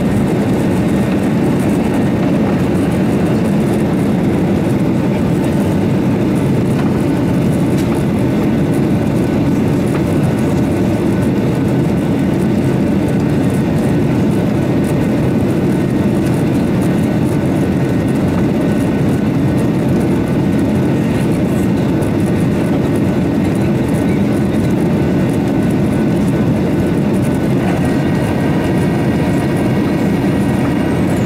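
Cabin noise of a Boeing 737-800 climbing after take-off, its CFM56-7B turbofans and the airflow heard from a seat over the wing: a steady deep rumble with faint, steady high whining tones above it.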